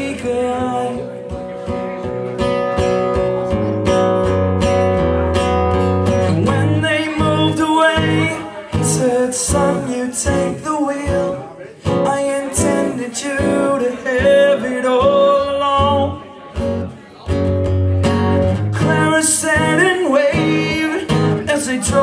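Acoustic guitar strummed in a steady rhythm, with a man's voice singing over it.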